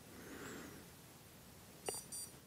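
Quiet room tone with a faint soft hiss in the first second. Near the end comes a sharp click and a short, high-pitched electronic beep.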